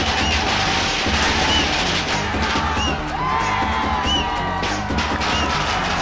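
A string of firecrackers going off in rapid sharp cracks, over festive film music with a steady drum rhythm.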